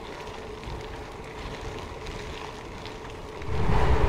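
Gravel bike tyres rolling over a gravel track: a steady hiss of tyre noise with a faint steady tone running under it. About three and a half seconds in, a much louder low rumble comes in.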